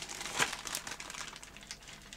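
Clear plastic bag crinkling as bundled cables are pulled out of it, with a sharper rustle about half a second in, then fading.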